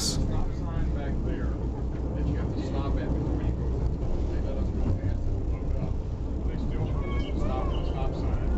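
Steady low rumble of a moving passenger train, heard from inside the coach, with people talking in the background.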